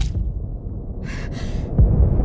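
A woman gasping twice in fear, two short sharp breaths about a second in, over a low steady dramatic drone. A deep hit with a falling sweep lands near the end.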